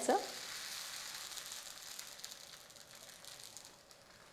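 Fermented millet dosa batter sizzling on a hot oiled cast-iron tava, a steady hiss that slowly fades as the batter sets.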